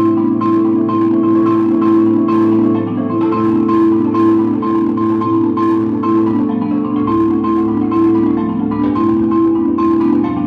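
Marimba played with six mallets, three in each hand: rapid rolls sustain full, steady chords whose notes shift as the music moves on.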